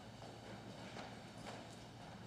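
Faint footsteps: a few clicks of shoes on the floor as people walk forward, over a steady low hum.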